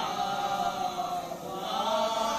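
A group of men chanting a marsiya, a Shia Urdu elegy, in unison with no instruments, led by one voice on a microphone. The voices hold long, drawn-out notes that slide slowly in pitch.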